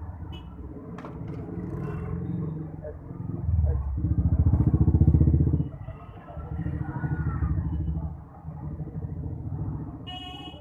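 Small-engine street traffic passing close by. A low putter of engines swells loudest about a third of the way in and again a little later.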